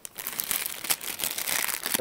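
Close crinkling and rustling handling noise with scattered sharp clicks, as kit parts and packaging are handled near the microphone.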